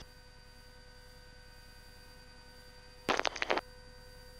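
Quiet radio and intercom channel: low hiss with faint steady hum tones. About three seconds in, a transmission is keyed with a click, and a brief garbled burst of about half a second follows.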